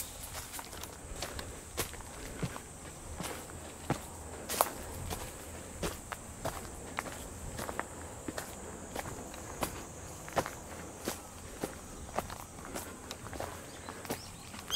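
Footsteps of a person walking at a steady pace up a dirt trail strewn with dry fallen leaves. Each step is a short, sharp crunch, about one and a half a second.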